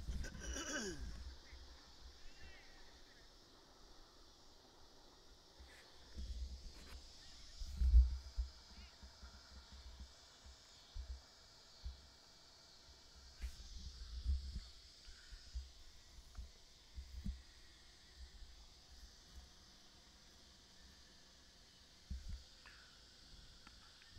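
A steady, high-pitched insect chorus, with a few low thumps and rumbles on the microphone; the strongest thump comes about eight seconds in.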